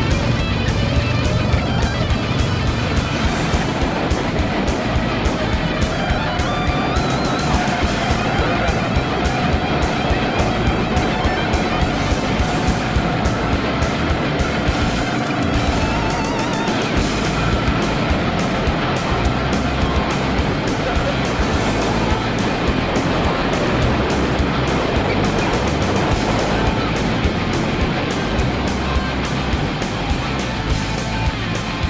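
Rock music with electric guitar and a steady beat, with go-kart engines running underneath.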